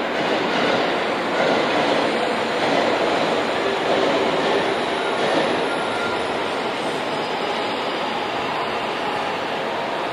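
Steady running noise of a train, an even rush and rumble without a clear rhythm.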